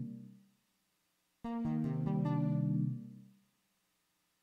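A MIDI synthesizer plays a sustained chord, the kind entered into a sequencer step from a keyboard. A previous chord fades out at the start. About one and a half seconds in, a new chord is built up note by note, the first key held setting its root note. It is held for about a second and released about three seconds in, fading out.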